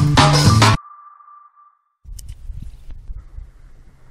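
The end of a channel intro jingle: rhythmic electronic music stops abruptly under a second in, leaving one ringing ping tone that fades away over about a second. After a moment of silence a faint low outdoor rumble comes in, with a click or two.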